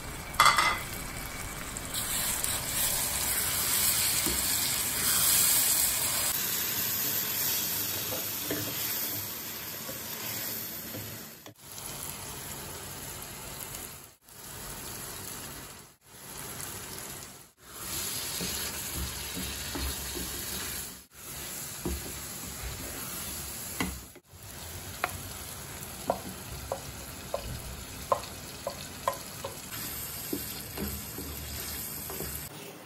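Onions and blended tomato sizzling in an aluminium pot while being stirred with a wooden spatula. A sharp clatter comes about half a second in, and a run of short sharp taps near the end.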